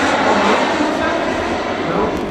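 Small jet turbine of a radio-controlled F-104S Starfighter model running in flight: a loud, steady whoosh that eases slightly near the end.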